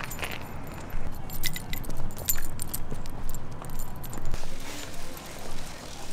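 Small metal pieces jingling in quick, irregular clinks, over a low rumble, while walking.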